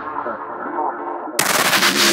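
Breakcore track in a breakdown: the music is thinned out, with the bass dropped and the treble fading away. About one and a half seconds in, a sudden loud burst of rapid-fire hits comes in across the whole range, like machine-gun fire.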